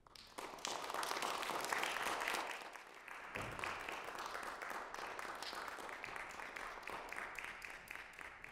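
Audience applauding: the clapping starts just after a piano piece ends, is loudest in the first two seconds, then continues more softly and thins out near the end. A single low thump sounds a little over three seconds in.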